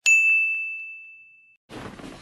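Notification-bell 'ding' sound effect from a subscribe-button animation: one bright ding that rings and fades away over about a second and a half. Faint background noise comes in near the end.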